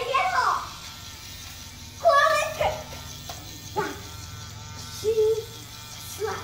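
Battery-powered bubble gun's small motor buzzing steadily, while a child gives short squealing laughs several times.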